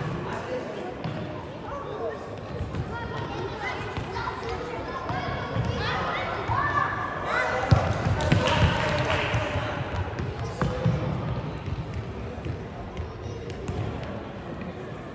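A futsal ball being kicked and bouncing on a wooden sports-hall floor, with children and spectators calling and shouting in the echoing hall. The loudest sound is a sharp kick or bang about eight seconds in.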